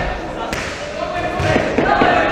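Raised voices, shouting in a gym during a boxing bout, with a sharp knock about half a second in and a few low thuds from the ring around a second and a half in.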